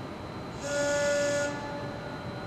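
A pitch pipe blown once: a single steady note with a breathy hiss, held for just under a second around the middle, sounding the starting pitch for an a cappella song.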